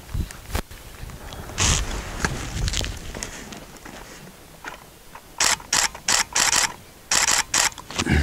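A camera shutter firing in rapid bursts: one frame early on, then a run of six quick frames at about four a second, a short pause, and three more near the end.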